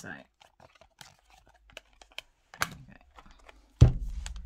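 Large oracle cards being handled: faint clicks and light rustles as the cards are moved and laid down, then one sharp, loud knock near the end.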